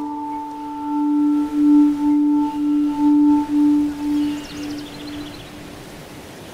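A single struck bell-like metallic tone with several ringing overtones, wavering in a slow pulse and fading away over about five seconds. A few faint high chirps come in about four seconds in.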